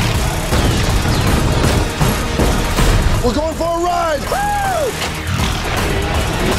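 Action-film sound mix: gunfire and explosions over a music score, with shouting around the middle.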